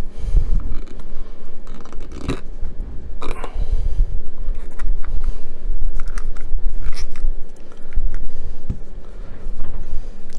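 Hands forcing a stiff rubber model-truck tyre over its plastic wheel rim: irregular rubbing and scraping of rubber against the rim, with a few sharp clicks.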